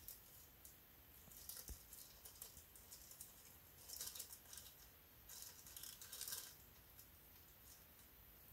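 Faint crinkling of a clear plastic bag being handled, in a few short bursts, the longest about two-thirds of the way in.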